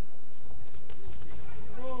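Boxing arena ambience during a bout: a low rumble with light, irregular knocks from the ring.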